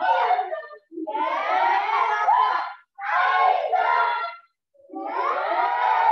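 A class of young martial arts students shouting together in unison, in four loud bursts of a second or two each, cut off sharply into silence between them.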